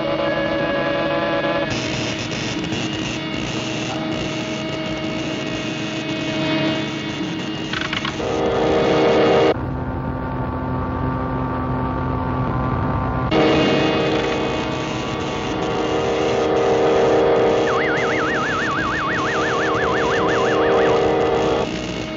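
Cartoon soundtrack of orchestral score mixed with the steady electric hum of a ray machine. For a few seconds in the middle the sound turns dull and low, and near the end a warbling tone wavers up and down for about three seconds.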